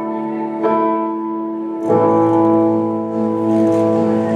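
Music with held chords, changing about half a second in and again near two seconds.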